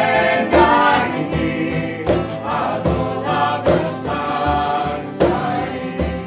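Women's voices singing a Welsh-language worship song over an accompaniment that strikes a chord about every three-quarters of a second.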